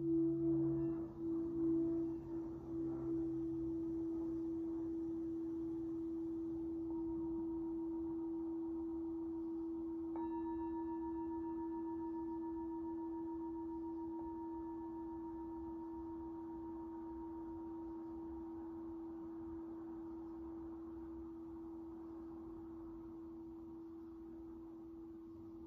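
Brass singing bowl ringing on one steady tone that slowly fades. About ten seconds in the bowl is struck again, and higher overtones ring out over it and die away over the following seconds.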